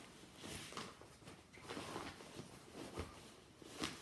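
Faint rustling of a Lug Zipliner fabric crossbody bag being handled as a soft sunglasses case is pushed inside it, with a few light knocks, the clearest about three seconds in.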